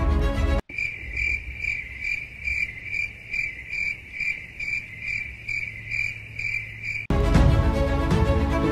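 Cricket chirping, a regular pulse of about two and a half chirps a second. It is cut in abruptly where the background music stops, just under a second in, and the music cuts back in near the end: an edited-in 'crickets' sound effect, the comic cue for an awkward silence.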